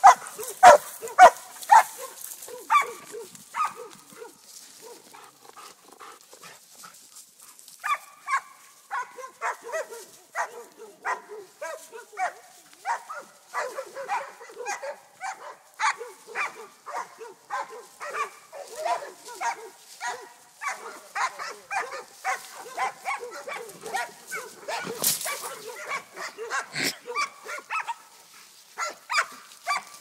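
Dogs barking repeatedly at caught wild hogs during hog-dog training. The barking is loud and rapid at first, thins out for a few seconds, then picks up again about eight seconds in as steady barking, several barks a second.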